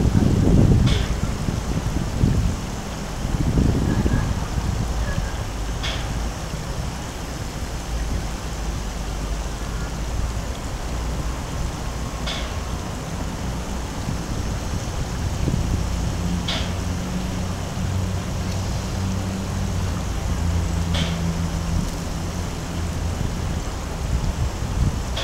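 Steady outdoor city background noise: a low hum and hiss, with a couple of low murmurs in the first few seconds and faint short ticks every few seconds.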